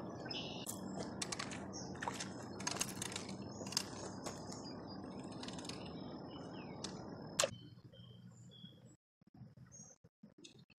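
Fishing reel being cranked: a steady mechanical whir with scattered clicks, which stops about seven and a half seconds in.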